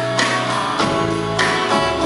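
Live rock band playing an instrumental passage with no vocals, guitar to the fore over sustained keyboard-like chords and a steady beat of regular hits.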